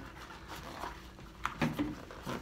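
Faint handling noise from a rubber tire and inner tube being held and turned, with a couple of light clicks about a second in, followed by a brief voiced sound from the man near the end.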